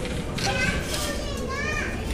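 Background chatter of people in a large dining hall. Near the end a high-pitched voice calls out, rising in pitch.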